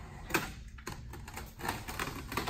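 Ice and water shield, a peel-and-stick roofing membrane, being handled and worked against the plywood: a few short crackles and rustles, the loudest about a third of a second in.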